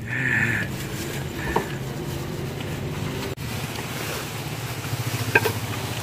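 A motor vehicle's engine idling nearby, a steady low hum with a fast, even pulse.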